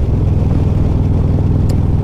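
Stage II 2020 Harley-Davidson Road Glide's Milwaukee-Eight V-twin with Reinhart headers and 4-inch slip-on mufflers, cruising at a steady engine speed, with wind rush over the bike.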